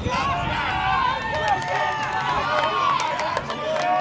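Several voices shouting and calling over one another, from players and touchline spectators during open play in a youth rugby match, with a few short sharp knocks.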